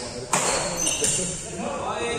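Badminton racket strings striking a shuttlecock during a rally: a sharp, loud hit about a third of a second in and a lighter one about a second in.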